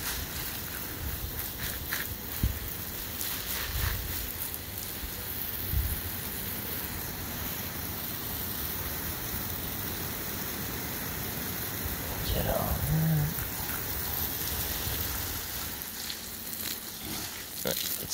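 Garden hose throwing a fine, sprinkler-like fan of spray over a flower bed: a steady hiss of water falling on the leaves and soil.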